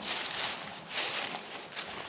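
Soft rustling and shuffling noise of a person moving about, swelling briefly about three times.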